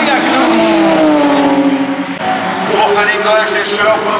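Racing car engines at high revs passing on the main straight. One car's engine note falls away over the first two seconds as it goes by. After a brief dip, another car's engine comes in with a rising, wavering pitch.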